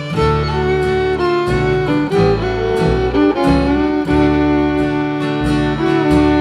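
Fiddle playing a melody of held, bowed notes over a steady strummed acoustic guitar and upright bass in an old-time string band.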